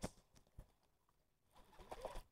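Near silence, with a sharp click at the start, a couple of faint ticks soon after and a little rustle near the end, from handling a fishing rod and reel close to the microphone.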